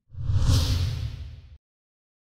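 A whoosh sound effect with a deep boom beneath it, swelling to its loudest about half a second in, then fading. It cuts off abruptly after about a second and a half.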